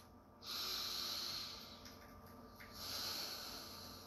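A woman taking a slow, deliberate deep breath close to the microphone: two long, airy breaths, each about a second and a half, with a short pause between.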